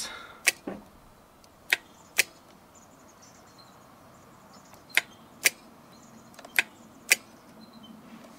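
Sharp metallic clicks from an opened 12-volt electromagnetic battery disconnect switch: its solenoid pulls the contact disc across the two main terminals and then lets it go. The clicks come about seven times, mostly in pairs about half a second apart.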